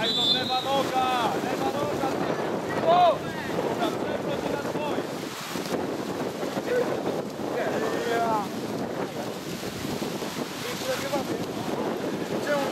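Steady wind noise on the microphone, with voices shouting calls across a football pitch: a high call right at the start, the loudest about three seconds in, another around eight seconds.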